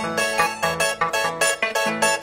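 Andean harp playing dance music in the Huaraz cumplimiento style: a quick, even run of plucked notes over bass notes.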